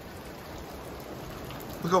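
Steady rain falling, an even hiss. A man's voice starts near the end.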